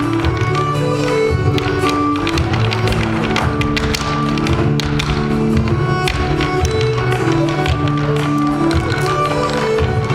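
Irish dancers' hard shoes striking the stage floor in quick, rhythmic taps, over Irish dance music.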